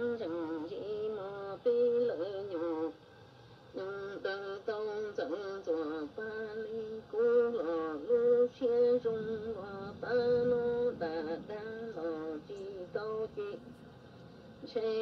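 A song: a solo voice singing melodic phrases with a strong vibrato, with a brief pause about three seconds in.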